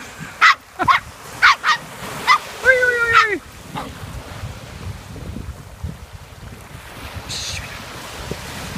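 A small dog, the miniature poodle, yapping: about five short, sharp yaps in quick succession, then one longer drawn-out bark about three seconds in. After that, waves washing on the shore with wind on the microphone.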